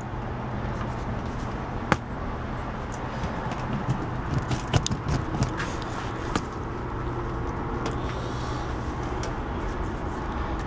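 Steady background noise with a low hum, broken by a few small clicks: one about two seconds in and a short cluster in the middle.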